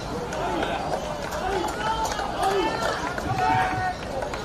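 Australian rules footballers shouting and calling to one another on the field, several voices overlapping, the loudest calls in the second half. A steady low rumble of wind on the microphone lies under them.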